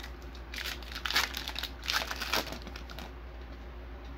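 Wrapper of a trading-card pack being torn open by hand, its crinkling coming in a few irregular bursts, strongest in the first half.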